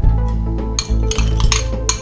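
A knife and bowls clinking a few times, most of them in the second half, as cucumber sticks are scraped out of a ceramic bowl into a glass salad bowl, over steady background music.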